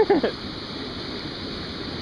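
Steady rush of water pouring over a rock ledge into a gorge pool, with a brief voice at the very start.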